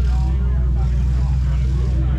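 A steady, loud low engine drone, with faint voices in the background.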